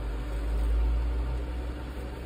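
Wood lathe running with a steady low hum that swells for about a second, with no tool cutting the wood.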